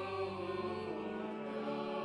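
Church choir singing with organ in long held notes: the Gospel acclamation sung just before the Gospel reading.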